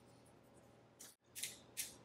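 An alcohol prep pad and its paper-foil wrapper handled in the fingers: faint room tone, then a few short scratchy rustles in the second half, broken by a brief dead gap.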